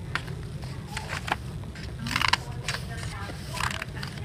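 Scissors snipping through a thick stack of folded paper, with the paper rustling as it is handled. There are several short snips and a longer, louder cut about halfway through.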